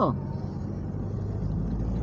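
Car engine and road rumble heard from inside the cabin while driving slowly, a steady low hum.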